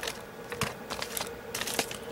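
A handful of light, sharp clicks and taps from small tools and parts being handled, coming closer together in the second half, over a faint steady hum.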